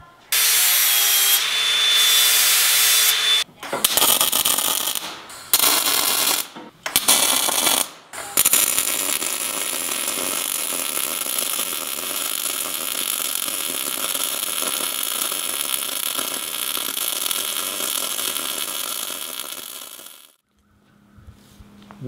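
Shop power tool running for about three seconds with a steady whine. Several short bursts of tool or welding noise follow. Then a MIG welder lays one long, steady, sizzling bead on a steel tube bumper for about twelve seconds and stops about two seconds before the end.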